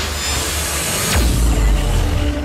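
Logo-animation sound effect: a loud whooshing rush with a sweep that drops steeply in pitch about a second in, landing on a deep bass swell.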